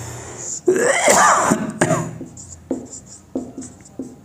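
A man clears his throat once, about a second in. Then comes faint squeaking and tapping of a marker pen on a whiteboard as he writes.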